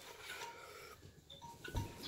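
A paper napkin rubbing against the face and nose as a man wipes his nose, quiet and scratchy, with one soft thump near the end.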